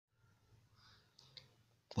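Near silence: faint room hum with two soft clicks a little past a second in. A man's voice starts right at the end.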